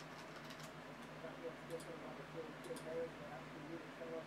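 Faint, scattered clicks of a computer keyboard and mouse, over a low room hum with faint voice-like sounds in the background.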